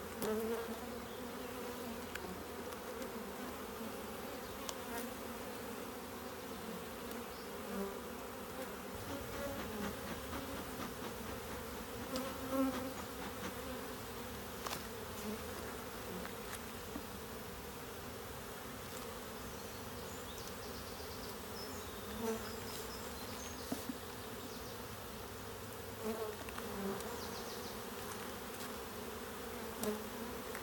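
Honeybees buzzing steadily around an opened hive as their brood frames are lifted out: a continuous low hum.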